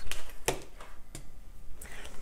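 Handling knocks from setting a hot glue gun down on a craft table: a few separate clicks and knocks, the loudest about half a second in.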